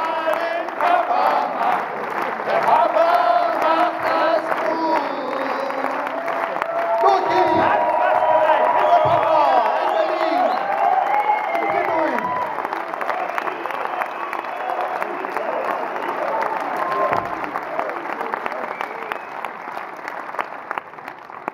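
A verse of a song sung live into a hand-held microphone over a PA, with long held notes that glide between pitches, while the audience claps and cheers; near the end the singing fades out and the clapping carries on.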